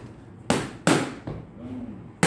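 Two punches from boxing gloves smacking into focus mitts, sharp slaps about a third of a second apart in the first half.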